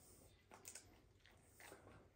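Near silence: room tone, with two faint brief soft sounds, one about half a second in and one near the end.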